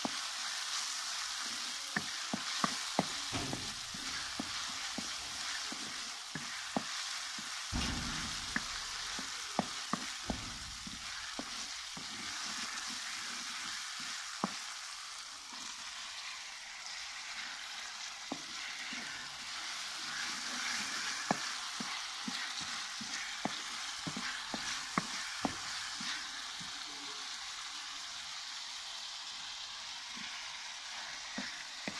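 Sliced onions sizzling in oil in an aluminium karahi with a steady hiss, stirred with a wooden spoon that scrapes and clicks sharply against the pan many times.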